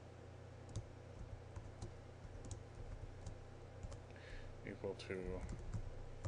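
Computer keyboard being typed on, scattered soft key clicks at an irregular pace, over a low steady hum.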